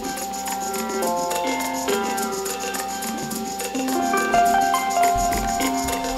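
Intro music: held chords that change about once a second over a quick, steady high ticking beat.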